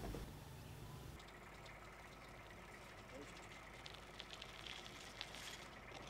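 Near silence: faint outdoor ambience with a few faint ticks. A low hum stops suddenly about a second in.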